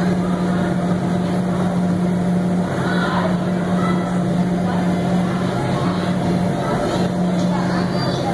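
Steady low hum of the electric air blowers that keep the inflatables inflated, with faint children's voices over it.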